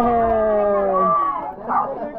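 A dog howling: one long held howl that slides slightly down in pitch and breaks off about a second in.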